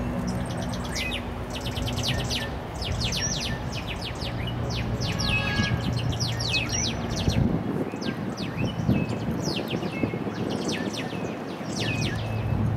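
Birds chirping: many short, sharp calls that sweep quickly downward in pitch, coming in rapid runs throughout, over a low steady hum and rumble.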